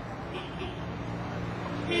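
Street traffic: a motor vehicle's engine grows louder over the road noise. A car horn sounds right at the end.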